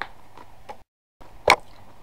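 A pencil box's push-button catch clicking once, sharply, about one and a half seconds in, with a few faint handling clicks before it and a brief cut to silence just before the click.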